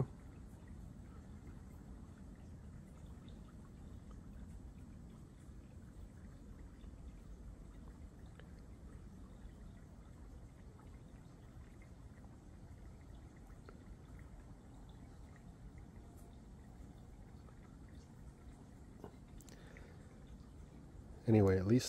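Faint, steady low background rumble with no distinct sound event.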